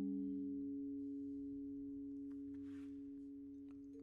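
Vibraphone notes left ringing after being struck, two or three steady tones dying away slowly with no new strikes; the lowest one fades out within the first second.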